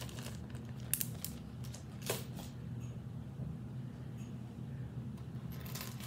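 Metal jewelry and its small plastic bag being handled: a few light clicks and clinks, the sharpest about two seconds in. A steady low hum runs underneath.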